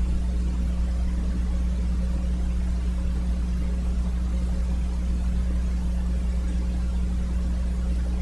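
Steady low background hum with a few faint, higher steady tones over it, unchanging.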